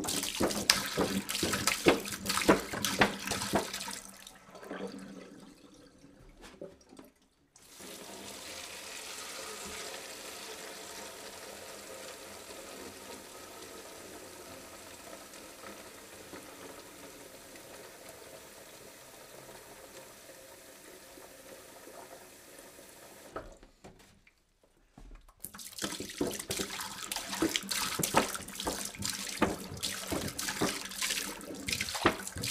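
Running water pouring into a basin already full of water, splashing and bubbling. Dense splashing for the first few seconds gives way after a short break to a long, even rush. After another short break near the end, the dense splashing returns.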